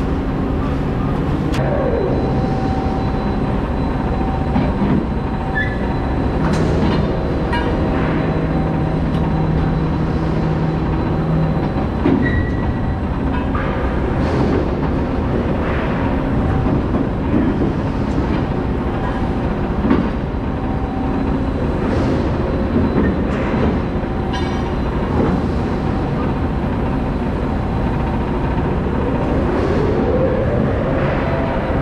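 Overhead bridge crane hoisting and travelling along its rails: electric motors whining over steady machine noise, with scattered clanks and knocks. One motor whine rises in pitch near the end.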